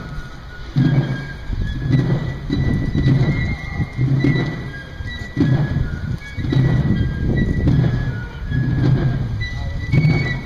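Military drums beating a slow march, about one stroke a second, with fifes playing high, thin notes above them.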